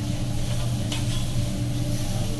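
Meat sizzling on a teppanyaki steel griddle while a chef's metal spatula scrapes and stirs it across the steel, with one sharp click about a second in, over a steady low hum.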